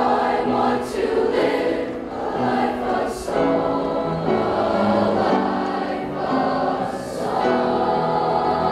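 A middle school choir of young voices singing together in sustained, changing notes, with the hiss of sung consonants standing out a few times.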